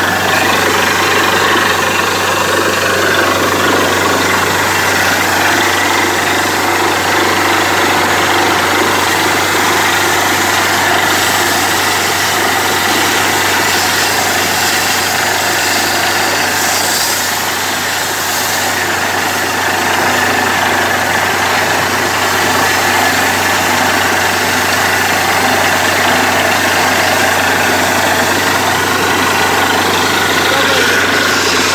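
Borewell drilling rig's engine running steadily with a low hum, under a continuous rush of water and air spraying out of the newly drilled bore.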